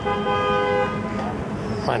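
A car horn sounds once, a steady two-tone blast lasting about a second, over faint traffic noise.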